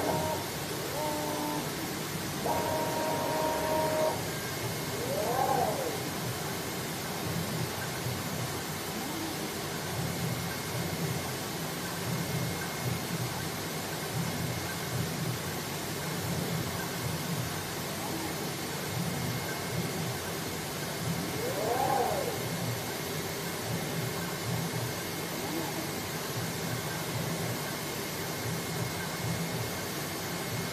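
Cardboard box cutting machine running: a steady blowing hiss with a constant high whine. Its motors whine up and back down in pitch a few times, around five seconds in and again past twenty seconds, with a few short steady tones in the first four seconds.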